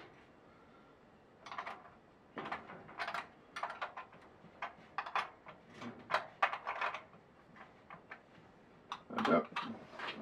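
Light metallic clicks and clinks of a steel spanner and nut on a battery terminal post as the nut is fitted and snugged down over a spring washer and copper bus-bar link, coming irregularly in small clusters.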